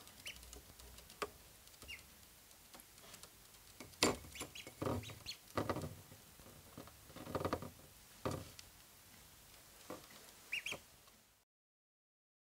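Domestic ducklings feeding from saucers of crumbly food: their bills tap and click on the plates and the wooden table, with dense runs of rapid pecking in the middle and a few short high peeps, the last near the end. The sound cuts out just before the end.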